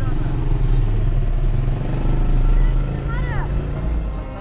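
Steady low rumble of a car's engine running while stopped, heard from inside the car. People's voices are heard at the open car window, with a short call about three seconds in.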